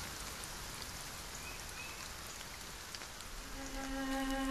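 Steady rainfall. Near the end a low, held string note comes in as music begins.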